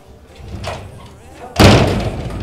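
A single sudden loud slam about a second and a half in, the loudest sound here, with low sound lingering after it.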